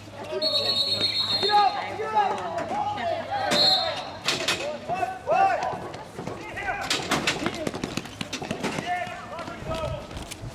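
Voices of players and onlookers shouting across an outdoor rink, with a short, steady, high referee's whistle near the start and a brief second blast about three and a half seconds in. In the second half come a run of sharp knocks: sticks and ball striking each other and the rink floor.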